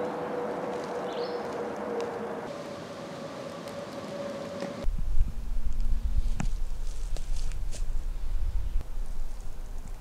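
For the first five seconds there is a steady hiss with a faint hum. Then, about five seconds in, a handheld camera carried at a walk through the woods: rumble from wind and handling on the microphone, with scattered footfalls and twig snaps on the forest floor.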